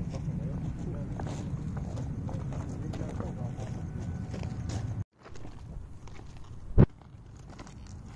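Low, steady rumbling on a handheld phone's microphone as it is carried over the ground. It cuts out abruptly about five seconds in, giving way to quieter rustling and one sharp knock near the end.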